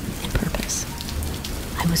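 Steady rain falling, a continuous rain ambience bed.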